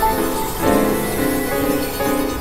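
Electronic synthesizer music: a run of sustained keyboard-like notes and chords that change every half second or so.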